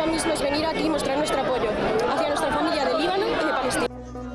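Crowd of demonstrators shouting and chanting, many voices at once. It cuts off abruptly near the end.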